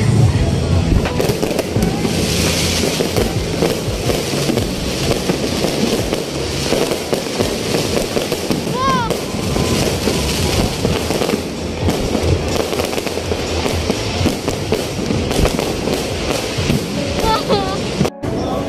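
Aerial fireworks going off overhead in a continuous run of bangs and crackling.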